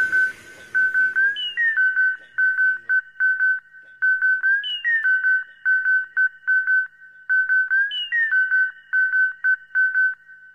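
Breakdown in a pumping-style electronic dance mix: a lone high-pitched synth lead plays a choppy, rapidly repeated note, sliding up at the start of each phrase about every three seconds, with the bass and drums dropped out.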